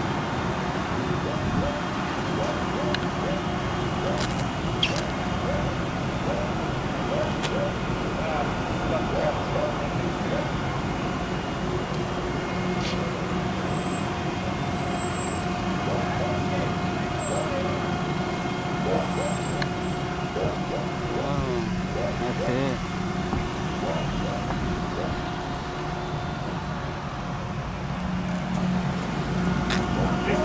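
Steady outdoor background noise with a constant mechanical hum and traffic noise, and faint voices talking now and then.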